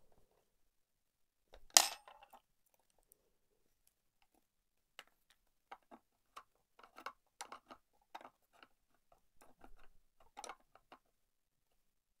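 Hand-fitting of the metal centre hardware on a resin cake-stand tray: one sharp knock about two seconds in, then a run of irregular light clicks and taps of the small metal parts against the hard resin.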